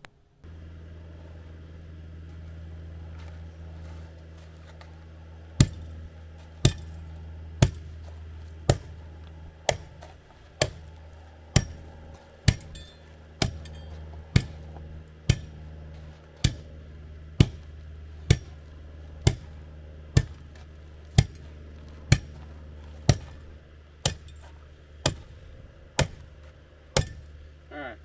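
Steel-plated hand tamper pounded down onto a crushed-rock gravel base, tamping it firm: a sharp strike about once a second, starting a few seconds in and running for some twenty strokes.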